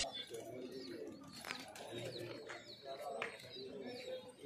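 Domestic pigeons cooing faintly, with a few short high chirps and light clicks among them.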